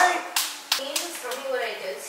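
Two sharp hand claps about a third of a second apart, followed by a faint voice.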